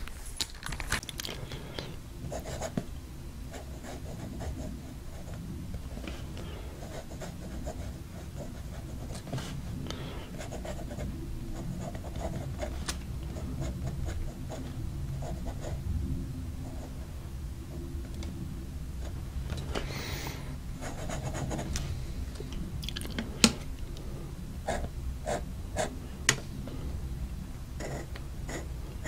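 Fountain pen with a bent extra-fine nib writing on grid paper: faint scratching of the nib across the paper as letters, loops and straight lines are drawn, over a low steady rumble. A few sharp ticks come in the last few seconds.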